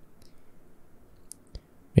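A few faint clicks of a computer mouse, spaced irregularly, as settings are clicked in the 3D software.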